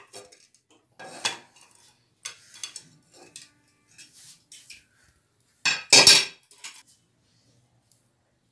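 Aluminium pressure cooker lid clinking and clanking against the cooker's rim and a metal utensil as it is worked loose and lifted out. Several separate clinks, with a louder clatter about six seconds in.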